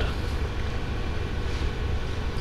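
Steady low background rumble with a faint even hiss and a light hum, without any sudden sounds.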